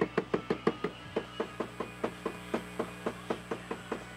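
Fingertip tapping on a Panasonic camcorder's built-in microphone, about five quick, even taps a second: a mic test to see whether the camcorder passes sound on its live feed.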